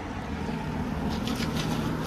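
An engine running with a steady low hum, under outdoor background noise.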